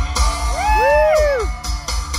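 Live band playing amplified rock music, electric guitars over a steady drum beat. About half a second in, a whoop rises and falls over the music for about a second.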